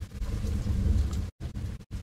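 Low rumble of thunder from a building thunderstorm.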